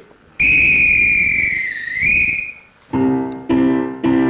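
A police whistle blown in one long shrill blast of about two seconds, its pitch dipping slightly before rising back at the end. Near the end a piano comes in with chords struck about twice a second.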